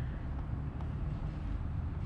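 Room tone: a steady low hum with no distinct sounds.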